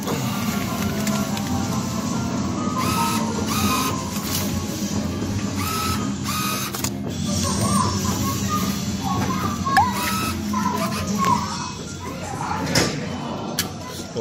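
Music playing throughout, over a claw machine's banknote acceptor motor running as it draws in a paper bill.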